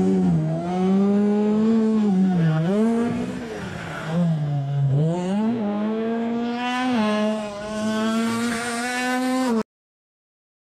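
AI-generated sports car engine sound: a steady engine note that dips in pitch twice, about two and a half and five seconds in, and climbs back each time, then cuts off suddenly near the end.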